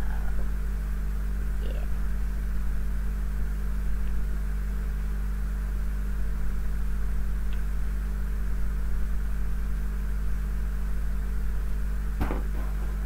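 A steady low hum at an even level, with a few faint light ticks over it.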